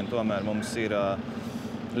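Speech only: a man talking in an interview.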